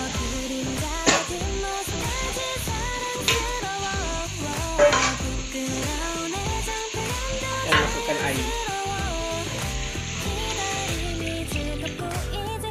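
Background music over food sizzling in an aluminium pot as pumpkin pieces are stirred in with sautéed onions, a metal spoon knocking against the pot about four times.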